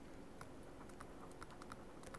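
Faint, scattered small ticks and taps of a stylus writing on a pen tablet, several a second, over quiet room tone.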